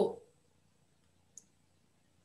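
Near silence after the tail of a spoken word, broken by one brief, faint click about one and a half seconds in.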